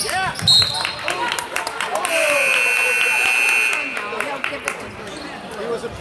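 Gym scoreboard buzzer sounding one steady tone for nearly two seconds, about two seconds in. A short sharp referee's whistle blast comes about half a second in, along with crowd voices and ball bounces on the hardwood, as play stops.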